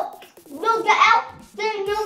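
Children's voices talking at a dinner table, in two short stretches, with faint knocks of hands and tableware underneath.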